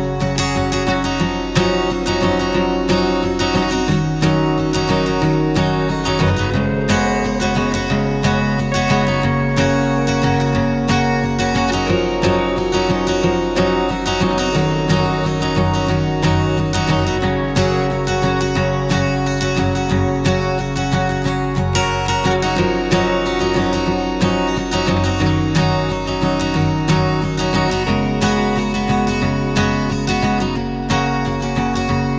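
Background music: strummed acoustic guitar chords at a steady pace, the chords changing every couple of seconds.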